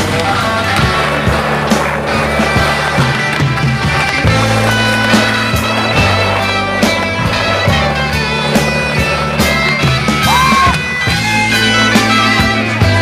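Rock music with skateboard sounds mixed in: urethane wheels rolling on concrete, and sharp clacks of the board landing and hitting coping at several points.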